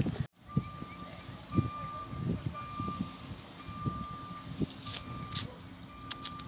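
A vehicle's reversing alarm beeping: a single steady tone repeating about once a second, each beep about half a second long, over faint low knocks.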